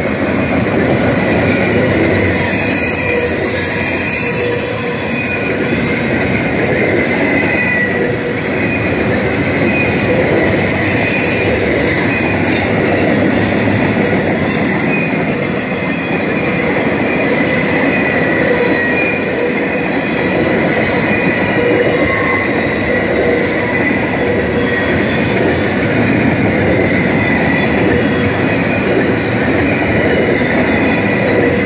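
Double-stack intermodal freight cars rolling steadily past a grade crossing. The wheels squeal on and off over a continuous rumble and clack of wheels on rail.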